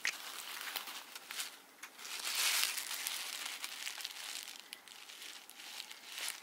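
Plastic packaging crinkling and rustling as a synthetic wig is pulled out of its protective wrap, loudest about two to three seconds in.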